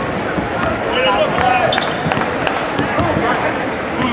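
Basketball gym sound: crowd chatter and voices over a steady noisy bed, with scattered sharp knocks of a ball bouncing on the court.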